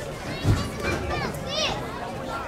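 Children's voices, several chattering and calling over one another, with a low thump about a quarter of the way in.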